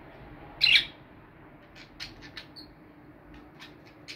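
Caged budgerigars calling: one loud, harsh squawk just over half a second in, then a scatter of short chirps.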